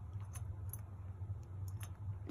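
A low steady hum with a few faint, light clicks scattered through it. The call bell is not rung.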